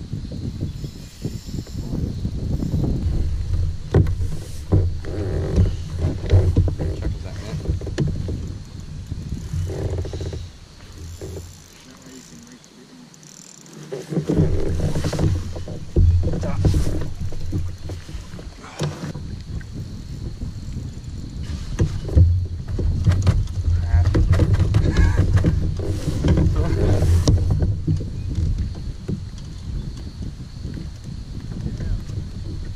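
Water splashing and knocks against a kayak as a large flathead is reeled in, netted and lifted aboard, over a low rumble of wind on the microphone that drops away briefly about halfway through.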